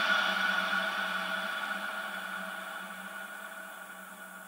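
The end of a phonk track fading out: a held synth chord with no beat, dying away steadily.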